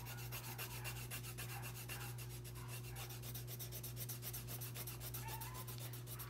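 Coloured pencil shading on paper: quick, even back-and-forth scratching strokes as an area is coloured in.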